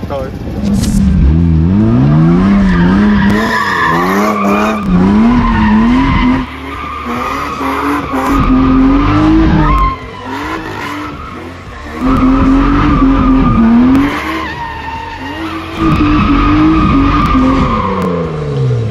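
Drift car's engine revving up and down over and over while the tyres skid on asphalt as it slides around a cone. The revs drop off briefly a few times, longest about ten seconds in.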